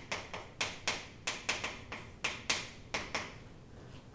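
Chalk writing on a chalkboard: a quick run of sharp taps, about a dozen strokes over three seconds, stopping shortly before the end.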